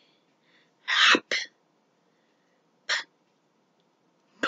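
Short, breathy bursts of a person's voice, three of them: two close together about a second in, one near three seconds.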